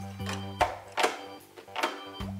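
Background music with a bass line. Three sharp knocks sound over it, plastic toy parts being handled and set down.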